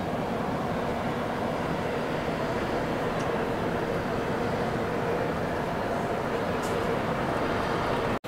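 Steady city street noise: a constant hum of traffic with no single event standing out.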